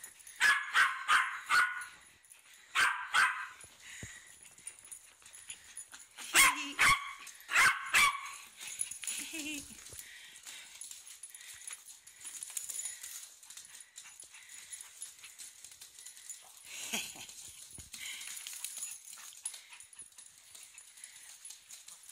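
A small dog barking: quick runs of short, high-pitched yaps, about ten in four bunches over the first eight seconds, then only faint sounds.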